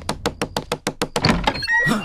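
A rapid run of sharp knocks, about ten a second, that stops after just over a second, followed by a few short high tones near the end.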